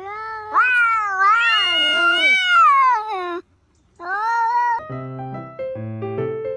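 A cat meowing: one long, drawn-out meow that rises and falls in pitch for about three seconds, then a short meow after a brief pause.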